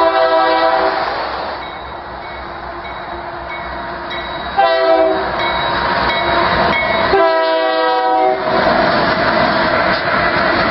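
Union Pacific diesel freight locomotive's air horn sounding three blasts: about a second long at the start, a short one about halfway, and a longer one near the end. Under it the passing train rumbles, rising and filling in after the last blast as the locomotives go by.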